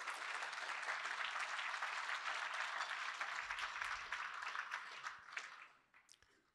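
An audience applauding: many hands clapping together in a steady patter that fades away near the end.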